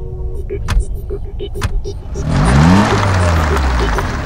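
Tata Sumo Victa SUV pulling away hard about two seconds in, its engine revving up in pitch as it accelerates, with tyres churning the dirt.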